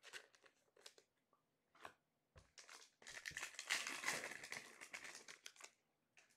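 Faint crinkling and tearing of a trading-card pack wrapper being ripped open, starting about three seconds in and lasting about two and a half seconds, after a few light clicks of cards being handled.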